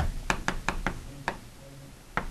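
Writing strokes on a board during a lecture: a run of about eight quick, sharp, irregular taps in the first second and a half.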